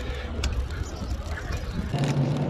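Wind rumbling on the microphone of a phone carried on a moving mountain bike, over tyre and road noise, with a faint click about half a second in.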